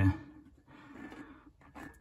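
A man's voice finishing a word, then quiet with only faint low noise.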